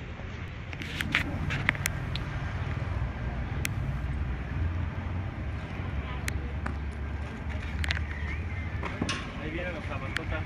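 A vehicle engine running with a steady low rumble, with several sharp knocks scattered through it.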